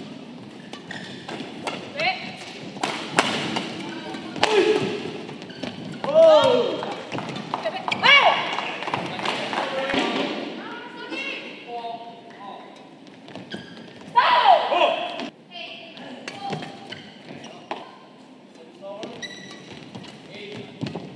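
Badminton rallies: rackets strike the shuttlecock again and again at irregular intervals, with sharp cracks and thuds. Between the hits come short, pitched squeaks that bend up and down, typical of shoes sliding on the court mat, along with voices in the hall.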